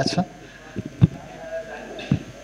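A man's voice through a handheld microphone stops just after the start. About a second in there is a single sharp pop, and near the end a faint, soft voice.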